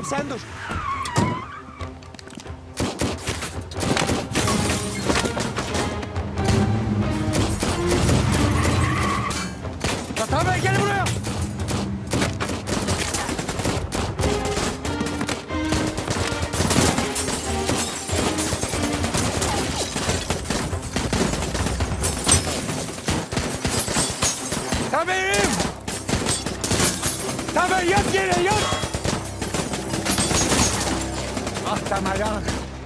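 Rapid gunfire from automatic rifles and pistols in a shootout, many shots in quick succession throughout, over a dramatic music score. Brief shouts break in around the middle and near the end.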